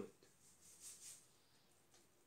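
Faint, soft hiss of dry powdered bait mix pouring from a cup into a bowl, rising and fading about a second in; otherwise near silence.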